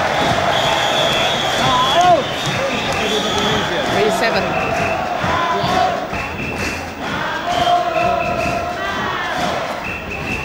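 Large indoor badminton crowd cheering and shouting, with long shrill whistle-like tones held over the noise and sharp claps or bangs cutting through it, the clearest about four seconds in and more near the end.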